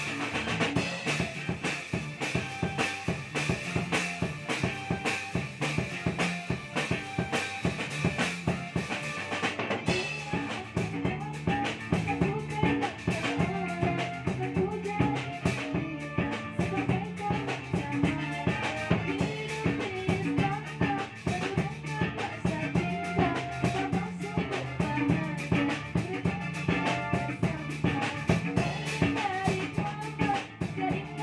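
Small gambus band playing, with a drum kit keeping a steady beat under an electronic keyboard, a guitar and a hand drum. A singer on microphone comes in about ten seconds in.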